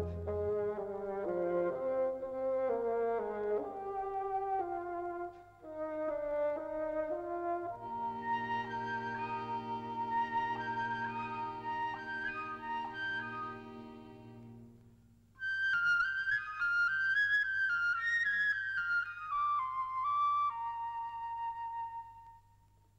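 Film score music for wind instruments with no speech: a brass-led melody moving in steps, then held chords under a higher line, and in the last several seconds a flute-like melody wavering up and down.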